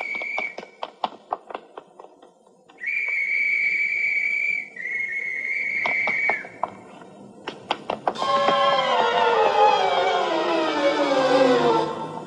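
Cartoon soundtrack: a held high whistle-like note sounds twice, with runs of light footstep taps around it, and about eight seconds in a descending musical phrase takes over.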